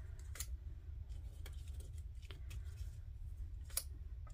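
Faint, scattered light taps and ticks of die-cut paper pieces being picked up and set down on a cutting mat, over a steady low hum.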